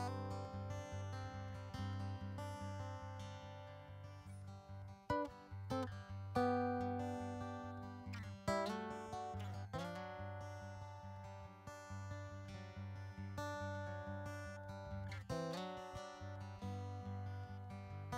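Solo acoustic guitar playing a slow instrumental intro: ringing chords over a steady low bass note, with a few harder strummed chords.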